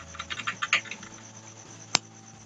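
Light, quick clicks from a computer mouse and keyboard, a run of them in the first second and then one sharp click near the end, over a faint low hum.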